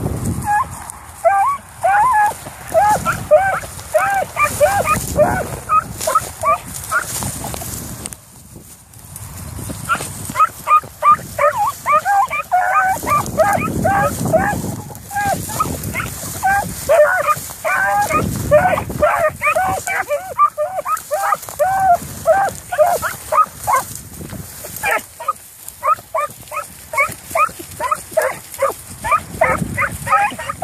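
Beagles baying as they run a trail: a quick, unbroken string of high yelping cries, several a second, rising and falling in pitch, with a short break about eight seconds in. Gusts of wind rumble on the microphone at times.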